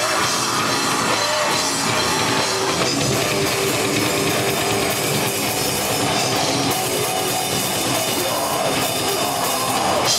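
A rock band playing live, with drum kit and guitar, loud and dense without a break.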